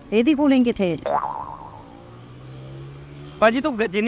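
Brief talk, then a comic sound effect: a boing-like tone sliding steadily downward in pitch for about a second, trailing into a faint low hum before talk resumes.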